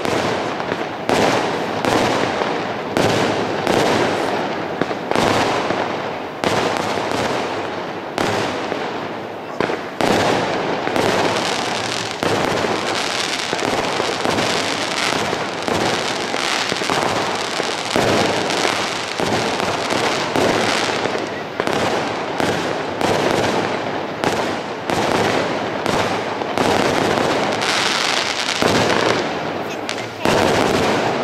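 Aerial fireworks display: shell bursts going off in quick succession, with no pause and the noise never dying down between the bangs.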